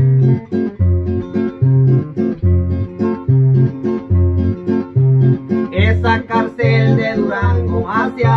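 Two acoustic guitars playing an instrumental passage in a steady bass-and-strum pattern, the bass notes alternating between two pitches under the chords. A male singing voice comes in about six seconds in.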